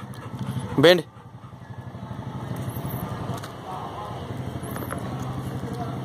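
A motor vehicle's engine running steadily nearby, a low hum that slowly grows louder over several seconds.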